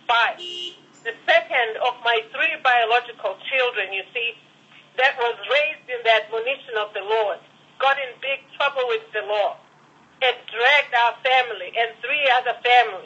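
Only speech: a voice talking steadily in phrases with short pauses, thin and cut off in the highs as heard over a telephone line.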